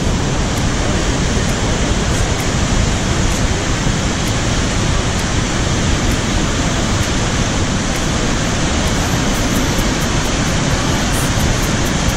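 Iguazu Falls: a massive volume of water pouring over the cliffs, heard as a loud, steady, dense rush with no let-up.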